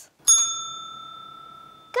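Desk bell (service bell) struck once by hand: a single ding about a quarter second in, ringing on and slowly fading.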